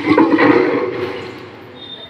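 A loud rushing noise that dies away over the second half, leaving a quieter background.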